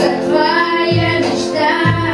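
A girl singing a pop song into a microphone over musical accompaniment, with a bass note that changes about once a second.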